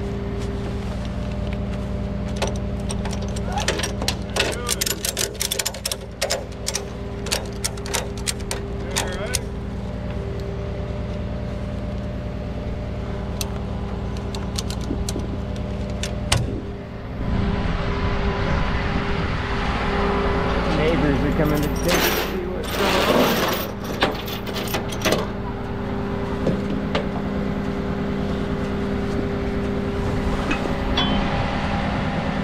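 Strap ratchet being cranked in a quick run of clicks, over the steady idle of a rollback tow truck's engine. In the second half comes a spell of rough, scraping noise with a few sharp knocks as the strap webbing is pulled across the steel deck.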